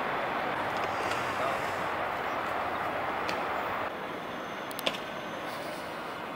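Steady city traffic noise, with one short click about five seconds in.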